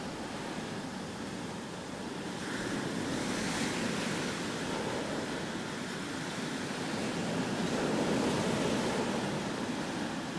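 Sea waves washing on a shore: an even rushing noise that swells and eases in slow surges.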